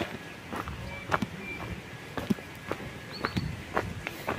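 Footsteps on a dry dirt forest path strewn with leaves and twigs: irregular light crunches about every half second, walking pace.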